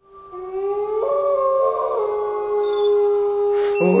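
A single long held note at one steady pitch, howl-like, fading in from silence and holding for over three seconds, with a short hiss near the end.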